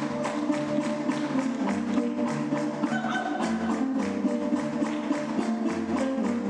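Fast Caucasian folk-dance music with a quick, even drumbeat of about four or five beats a second over a stepping bass line, accompanying a children's folk dance.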